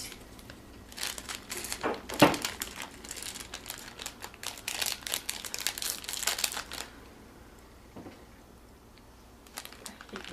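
Crinkly wrapper of a packet of yogurt-drop candies being opened and handled, a run of rustling crackles lasting about six seconds with one sharper snap about two seconds in.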